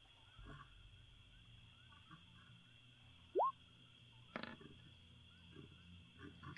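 Near quiet with a faint steady hiss, broken by one short rising chirp about three seconds in and a single click about a second later.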